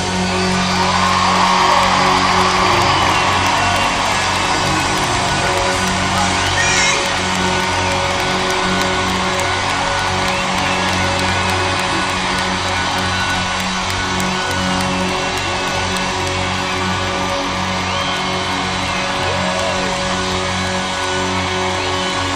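Live rock band playing in an arena, with held low notes underneath and the crowd cheering and whooping.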